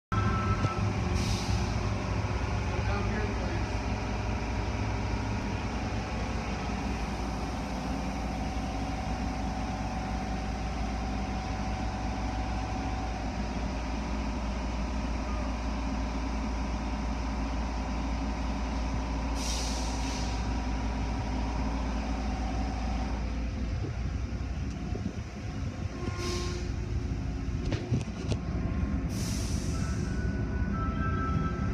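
Car wash machinery running with a steady low hum, heard from inside a car, with four short hisses of air spread through. The hum shifts about 23 seconds in, as the car moves into the wash tunnel.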